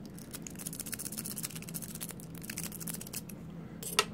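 Peterson Wonder Wave steel rake pick scrubbing quickly in a padlock's pin-tumbler keyway under a tension wrench: a fast run of small metallic clicks and scratches as the pins are raked, then a single sharper click near the end.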